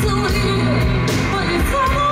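Live folk-rock band performing: a woman sings a wavering melody over bass guitar and drums, with cymbal crashes.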